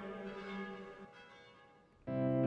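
A church bell's ring dying away, several steady tones fading out to near silence toward the end.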